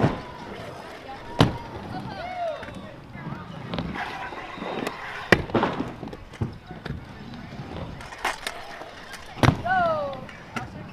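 Sharp knocks of scooter and bike wheels hitting the wooden ramps of a skatepark: three loud ones, about a second and a half in, midway and near the end, with smaller knocks between and voices in the background.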